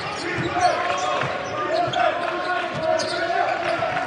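Basketball being dribbled on a hardwood court, with players' voices calling out in the arena.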